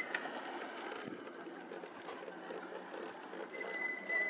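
Quiet road and riding noise from an electric bike in motion, with a thin high electric whine coming in near the end.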